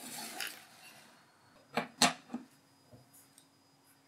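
Small electronic parts being handled on a desk: a brief rustle at the start, then two sharp clicks about two seconds in and a few lighter ticks. A faint steady high tone comes in just before the clicks.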